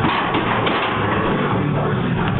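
A loaded barbell set back into the bench press uprights with a sudden clank at the start, over loud rock music playing in the gym.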